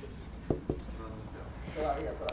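Marker pen writing on flip-chart paper: a few short scratchy strokes with a couple of sharp taps in the first second.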